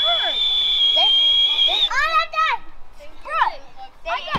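Children's voices: a long, steady high-pitched squeal held for about two seconds at the start, then short shouts and chatter.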